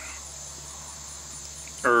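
A steady, high insect trill with a faint low hum under it.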